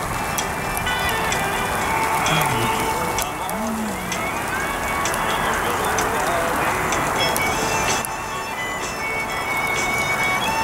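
Steady rain falling, with scattered drop ticks close by, and faint music in the background.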